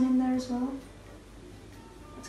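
A woman's voice finishing a word, then a quiet stretch with faint steady background music.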